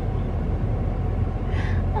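Steady low rumble of a pickup truck's running engine and road noise heard inside the cab, with a short breathy sound near the end.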